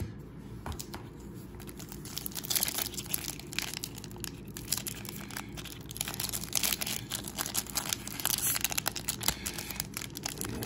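Plastic wrapper of a 2001 Upper Deck Golf trading-card pack crinkling and tearing as hands work at a pack that resists opening. Quieter handling comes first, then a dense run of crackles from about two seconds in.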